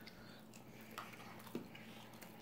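Faint chewing of a mouthful of chicken pot pie, with two soft clicks about a second in and half a second later.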